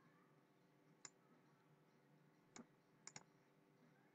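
Near silence broken by a few faint computer mouse clicks: one about a second in, another past the halfway mark, and a quick double click a little after three seconds.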